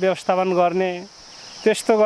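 A steady high-pitched insect chorus under a man's speech; his talk breaks off for a moment about a second in, leaving the insect sound alone.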